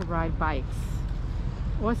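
Steady low rumble of wind buffeting a moving microphone while riding a bike, with a person's voice briefly over it.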